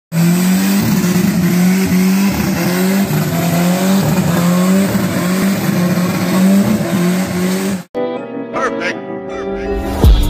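Turbocharged rear-wheel-drive VW Gol doing a burnout: the engine is held at high revs, wavering, while the rear tyres spin and squeal. About eight seconds in it cuts off abruptly and music begins.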